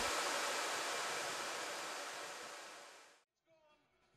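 Rack of cooling fans on cryptocurrency mining machines, whirring as a steady rush of air that fades out over about three seconds, then near silence.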